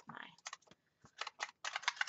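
A quick run of small irregular clicks with paper rustle as a stack of planner pages is lifted off the metal rings of a disc-bound Happy Planner.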